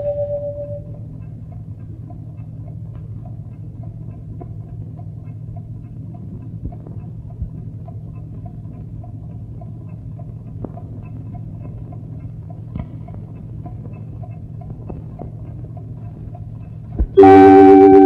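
Low, steady hum with scattered faint clicks and crackle: the background noise of an old black-and-white film soundtrack in a gap between songs. Loud music starts abruptly about a second before the end.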